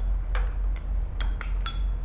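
A metal spoon and chopsticks clinking against ceramic rice bowls: about five separate light clinks, each ringing briefly, over a steady low hum.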